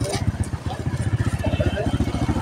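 An engine running steadily at idle, with a rapid, even low throb, under people talking in the background.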